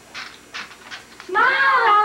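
A high-pitched, drawn-out cry, about half a second long, comes near the end, after a few short faint sounds.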